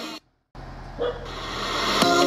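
Music playing on an F&D W5 mini Bluetooth speaker in a sound test. One track fades out, there is a brief silence, then the next track fades in with a short louder note about a second in.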